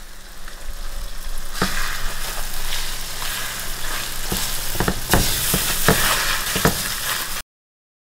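Eggs and steak pieces sizzling in a frying pan, the sizzle growing louder about a second and a half in, with a spatula knocking and scraping against the pan several times. The sound cuts off suddenly near the end.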